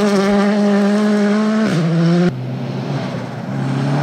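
Rally car engine held at high, steady revs on a gravel stage, from a Hyundai i20 Rally2. Just under two seconds in, the note steps down in pitch. About half a second later it turns quieter, lower and rougher.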